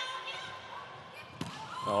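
Indoor arena background during a volleyball rally, with one sharp hit of the ball about one and a half seconds in.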